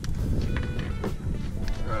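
Background music over a steady low rumble.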